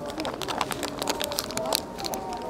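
Murmur of passers-by's voices on a busy street, with scattered light crackles and clicks close by as a paper-wrapped hot pancake is handled.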